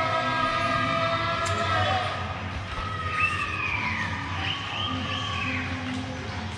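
Voices singing long held notes in the first two seconds, then a distant siren wailing up and down for the last three seconds.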